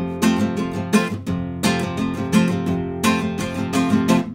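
Nylon-string classical guitar strummed in a steady rhythm.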